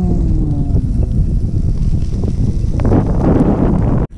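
Wind buffeting the microphone, a steady heavy rumble, with a brief noisier rush about three seconds in.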